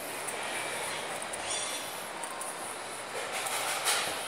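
Escalator running: a steady mechanical rumble and hiss, with a short burst of noise near the end.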